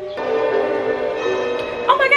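Film score playing over the TV: a chord of steady held tones, with more notes joining a little past halfway.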